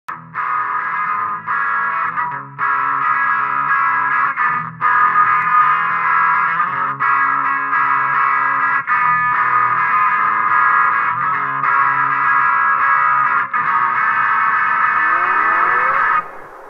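Distorted, effects-laden electric guitar playing held chords as the instrumental intro of a rock song, broken by short gaps every couple of seconds. Near the end a rising sweep swells up under the chords.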